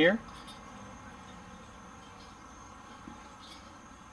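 A steady high insect drone with a few faint ticks from a brass GasStop fitting being handled at a propane tank valve.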